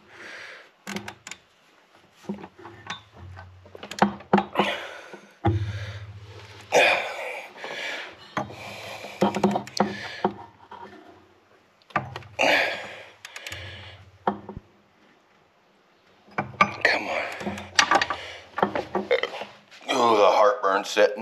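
A man muttering and grunting indistinctly while he works, with scattered sharp clicks and knocks of metal tools against the engine.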